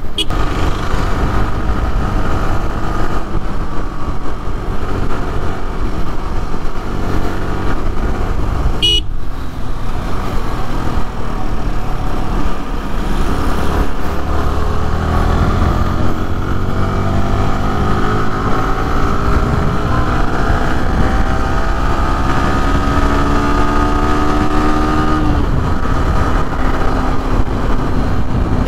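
Yamaha motorcycle riding through city traffic, heard from the rider's seat: steady engine and road noise. The engine pitch climbs slowly for about ten seconds under acceleration, then drops. A short high-pitched toot, like a horn, comes about nine seconds in.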